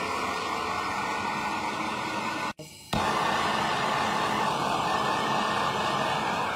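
Handheld gas blowtorch burning steadily with a constant hiss, its flame played on a steel safe door. The sound breaks off briefly about two and a half seconds in, then resumes.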